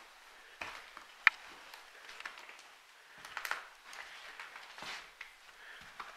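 Irregular footsteps and scuffs on a floor littered with debris. A sharp click about a second in is the loudest sound.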